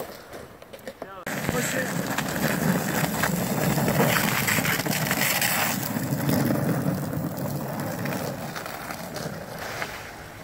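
A sled sliding and scraping over an icy road, a continuous rushing scrape that starts suddenly about a second in, is loudest around the middle and fades toward the end.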